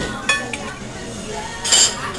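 Tableware clinking: a sharp clink about a third of a second in and a louder ringing clink near the end, over a murmur of voices.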